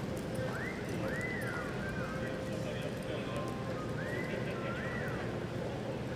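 A horse loping on soft arena dirt, its hoofbeats set against a steady background murmur. High, whistle-like calls that rise and fall come in two quick pairs, about a second in and again about four seconds in.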